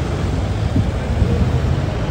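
City street ambience: a steady low rumble of road traffic, with faint voices in the background.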